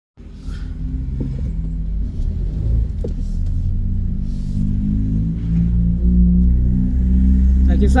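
Car engine and road rumble heard from inside the cabin while driving slowly up a street, a steady low drone that shifts slightly in pitch.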